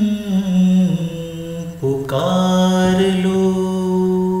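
A man's voice humming slow, long-held notes of a Hindi film melody, gliding between pitches. It breaks off about two seconds in, then takes up a new held note.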